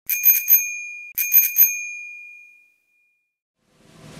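Bicycle bell rung in two quick bursts about a second apart, each a rapid run of three or four strikes, the last ring fading out over about a second. Music starts to come in at the very end.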